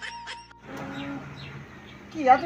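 A quick run of short, high bird chirps, about five a second, that cuts off suddenly about half a second in, followed by a quieter stretch with a low steady hum.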